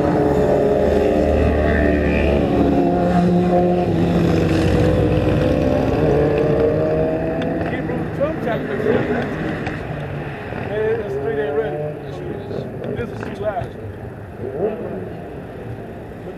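A motor vehicle engine running close by, loud for the first several seconds and then fading away, with voices faintly behind it near the end.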